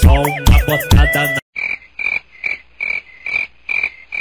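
Hip-hop music cuts off abruptly about a second and a half in. It is replaced by a comic sound effect of short, high, croaking chirps repeating evenly, about three a second.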